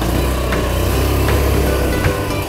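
A TVS scooter's small single-cylinder engine idling steadily as a low, even hum, with background music over it.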